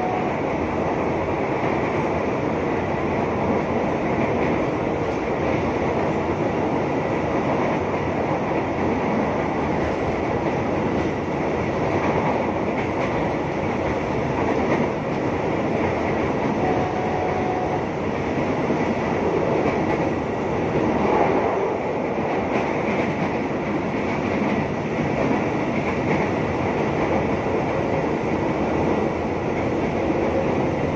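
Electric commuter train (KRL) running at speed, heard from inside the carriage: a steady rumble of wheels on rail and car body noise, with a faint steady high tone over it.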